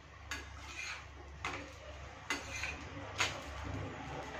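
Metal cooking utensils clinking against pans and bowls on the stove: four sharp clinks about a second apart, each ringing briefly.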